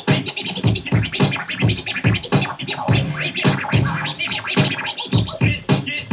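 DJ scratching a record on a turntable: fast back-and-forth strokes that chop a sample into quick sweeps of rising and falling pitch.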